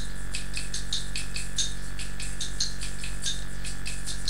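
Light rhythmic percussion, high-pitched and crisp, keeping the beat at about six strokes a second in a gap between the choir's sung phrases, over a steady electrical hum.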